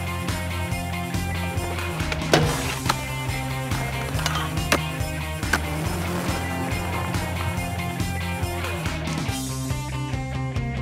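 Guitar rock music over skateboard sounds: wheels rolling on the ramp and a few sharp clacks of the board, the loudest about two and a half seconds in and again near five seconds.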